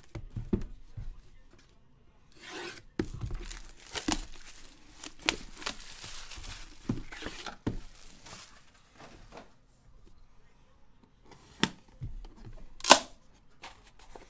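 Plastic wrapping being torn and crinkled off a sealed trading-card box for several seconds. Near the end come a couple of sharp clicks as the box's metal latches and lid are opened.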